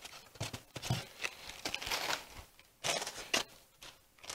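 Plastic-wrapped polystone statue parts being handled in a foam tray: scattered soft clicks and light rustling of the wrapping.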